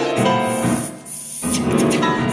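Soprano voice and grand piano performing a contemporary art song, with a hissing noise during the first second. The sound dips briefly just after a second in, then the music comes back in.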